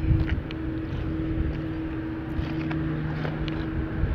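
A steady machine hum at one constant pitch, over a low rumbling noise.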